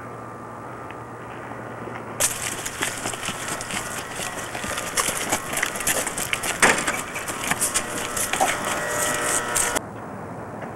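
Rapid crunching and scuffing of running footsteps with the clatter of a handheld camcorder being jostled. It starts suddenly a couple of seconds in and cuts off abruptly just before the end.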